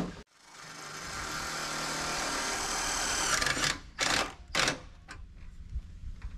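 Cordless drill driving a screw: the motor picks up speed and runs steadily for about three seconds, then gives three short bursts.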